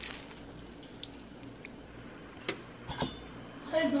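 Faint steady kitchen background hiss, with two sharp light clicks about half a second apart in the second half: a metal spoon knocking against a stainless steel saucepan of peaches and sugar.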